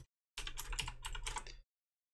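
Computer keyboard keys clicking as a short word is typed: a quick run of keystrokes lasting about a second, starting shortly in.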